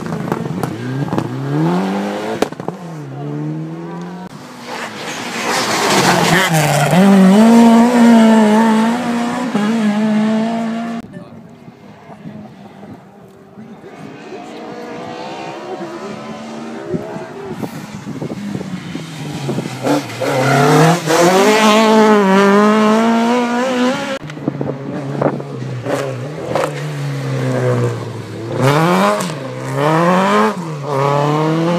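Rally cars passing one after another, their engines revving up and down through the gears. The first pass is loudest a few seconds in, there is a lull in the middle, and a second car passes loudly in the second half, with another arriving near the end.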